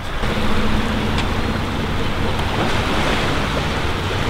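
Small waves washing onto a sandy shore, with wind rushing on the microphone and a steady low hum underneath.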